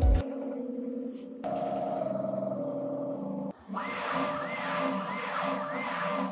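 Bambu Lab X1-Carbon 3D printer running its calibration: the motors hum steady tones that step up in pitch about a second and a half in. After a brief break just past halfway, a warbling whine follows, rising and falling about three times a second.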